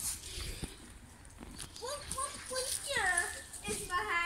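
A child's voice making wordless sounds that swoop up and down in pitch, in the second half.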